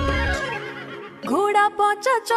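Backing music fades out, then about a second in a horse neighs, rising and breaking into a short wavering whinny.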